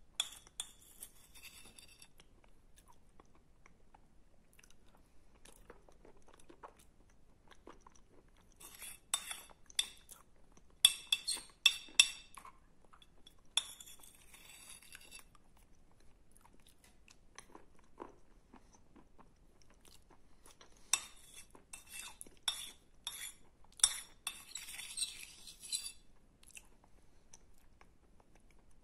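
Close-up crunching and chewing of a wet chalk paste, with a metal spoon clinking and scraping in a ceramic bowl. The crunches come in bursts, thickest around the middle and again near the end.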